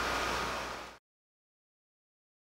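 Steady background hiss with a faint hum, fading out about a second in, then complete silence.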